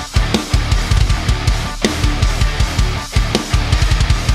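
Acoustic drum kit with Sabian HHX cymbals played hard over a heavy rock song, with rapid bass-drum strokes and cymbal wash. The music drops out for an instant at the start and again about three seconds in.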